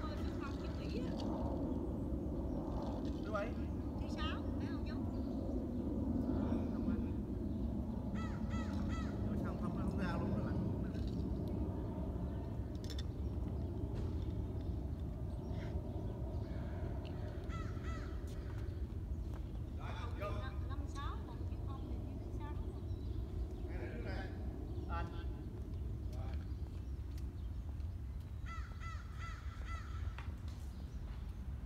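Outdoor tennis play: a racquet strikes the ball now and then with a sharp knock over a steady low rumble, while groups of short, repeated high calls come and go, most clearly near the end.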